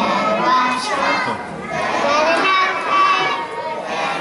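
Several young children's high-pitched voices, overlapping and continuous.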